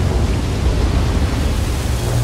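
Steady, loud rushing noise with a deep rumble underneath: the sound design of a monster-movie trailer's soundtrack, storm- and surf-like, without speech or melody.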